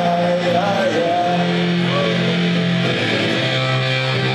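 Live rock band playing loud, recorded from the crowd: electric guitar and bass chords sustain, and a man's singing voice carries a line through the PA in the first second or so.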